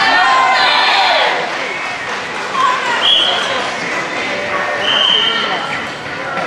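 Voices of competitors and spectators shouting and calling out during a karate sparring exchange, loudest in the first second, with feet thudding on the sports-hall floor. Two brief high steady tones follow, about two seconds apart.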